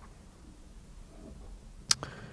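Quiet room tone with a faint low rumble, and one sharp click near the end.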